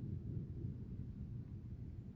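Steady low background rumble with no distinct sounds: room tone.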